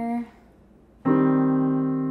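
Piano keyboard: a held G minor chord is released about a quarter second in, and after a short silence a C minor chord is struck about a second in and held. This is the minor dominant resolving to the tonic without a leading tone (B flat instead of B natural), a pull that sounds nice but is not as strong.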